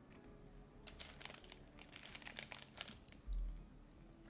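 Paper sleeve around a hotteok crinkling and crackling in the hand for about two seconds, followed by a short dull thump near the end.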